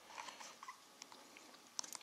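Faint, scattered clicks of an HP 17bII+ financial calculator's keys being pressed, a few light ticks with two close together near the end.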